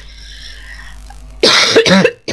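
A woman coughs loudly, starting about one and a half seconds in; she puts the cough down to being a little nervous.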